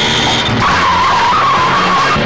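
Car tyres squealing as a car skids round a corner. The wavering screech starts about half a second in.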